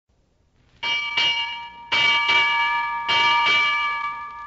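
A ship's bell struck in pairs, each strike ringing on so that the tones overlap and hang after the last stroke.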